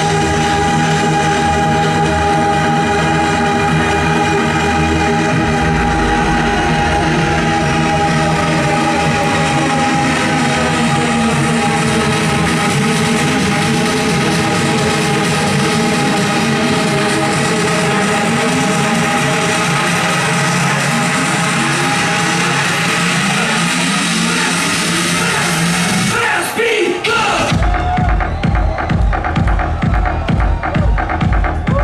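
Loud electronic dance music played by a DJ through a festival sound system: a long build-up of held synth chords with rising runs. About 26 seconds in a sweep comes, and then a heavy kick drum comes in at about two beats a second with the high end filtered away.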